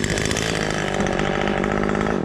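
Husqvarna T540XP Mark III two-stroke top-handle chainsaw running steadily.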